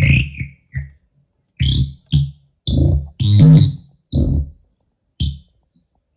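No-input feedback loop through guitar pedals (EHX Bad Stone and Stereo Polyphase phasers, Dreadbox Treminator and Nobels tremolos, Moogerfooger ring modulator) sounding in irregular stuttering bursts separated by silence. Each burst is a low buzzing hum with a high arching tone on top, and the loudest comes about three and a half seconds in. The randomness comes from a control-voltage feedback loop between the tremolo and the ring modulator.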